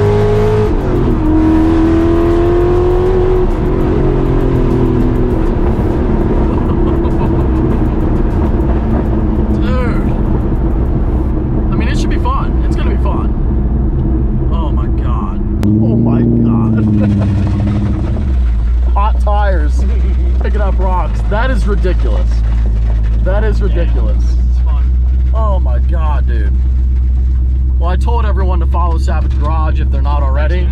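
Whipple-supercharged V8 of a Ford GT heard from inside the cabin. Its revs climb and drop at a shift about a second in, then sink as the car slows. Around sixteen seconds there is a single rev blip, and after that a steady deep idle that voices talk over.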